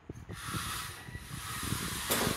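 Small DC gear motors of a four-wheel robot car whirring as it drives across a tiled floor. The motor noise picks up again about a third of a second in, after a brief lull, with a faint rattle from the chassis and wheels.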